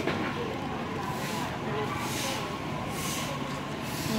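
Busy street-market ambience: people talking in the background over a steady din, with several short bursts of hiss.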